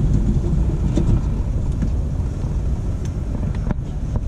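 Steady low rumble inside a Dubai Metro train carriage standing at a platform, with a few faint clicks near the end.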